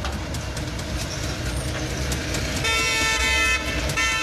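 Street traffic rumble, then a car horn sounds one steady note for about a second, starting about two and a half seconds in.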